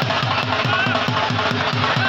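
A dhol drum beaten in a fast, even rhythm, about five low strokes a second, over the noise of a large crowd.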